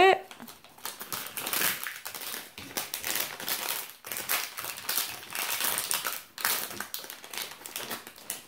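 Plastic blind-bag pouch crinkling in quick, irregular rustles as small hands work it open and pull the toy out.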